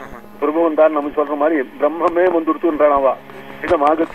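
Only speech: a man talking, on a narrow-band recording with little above the middle of the voice range, over a steady low hum.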